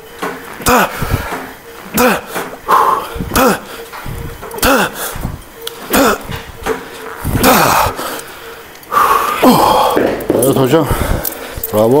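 A man's forced grunts and breath pushed out under heavy effort, one with each repetition of a heavy incline dumbbell chest press taken to failure, coming about every one and a half seconds, each dropping in pitch. Near the end the sounds run longer and closer together.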